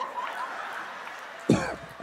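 A single short cough close to a handheld microphone, about a second and a half in, over faint room noise.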